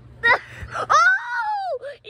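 A child's high-pitched, wordless yell: a short cry, then a long call that wavers and falls in pitch near the end.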